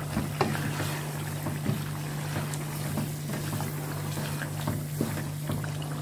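Mutton karahi sizzling in oil in a wok while a wooden spatula stirs it, with irregular light knocks and scrapes of the spatula against the pan. This is the bhuna stage: the gravy is fried down with the yogurt just stirred in. A steady low hum runs underneath.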